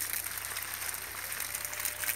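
Water running from a hose into the hanging soil bags of grafted sapodilla plants and splashing down through the leaves: a steady, even splashing.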